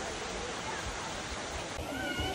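Steady rush of flowing water at an outdoor natural swimming pool, with wind rumbling on the microphone and faint distant voices. The background changes abruptly near the end.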